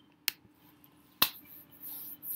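Two sharp computer mouse clicks about a second apart, over a faint steady hum.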